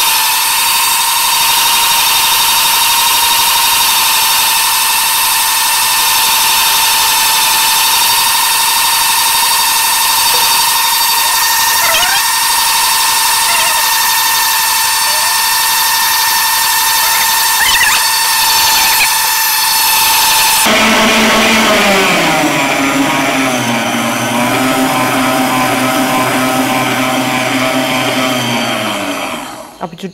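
Electric stand mixer running at high speed with a steady whine, its balloon whisk whipping egg whites and sugar into meringue. About two-thirds of the way through the sound shifts abruptly to a lower hum that slowly sinks in pitch, then the motor stops near the end.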